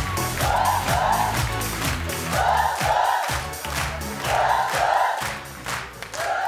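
Upbeat theme music with a steady beat and bass, over which a studio audience shouts in unison in paired two-syllable bursts about every two seconds, cheering and chanting along.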